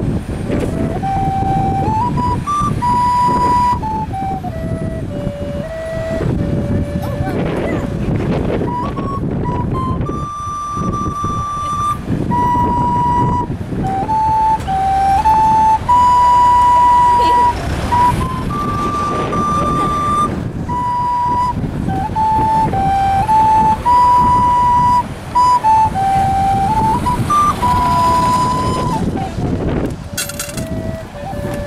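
A tin whistle playing a slow melody of long held notes that step up and down, one clear note at a time, over a low rumble of street traffic.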